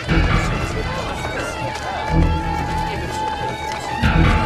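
Traditional Chinese wedding procession music: heavy percussion strikes about two seconds apart, with a long steady high note held from about one and a half seconds in.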